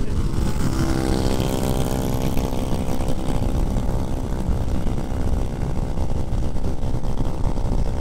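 Heavy wind noise on the microphone at highway speed, with the steady engine note of a motorcycle overtaking alongside.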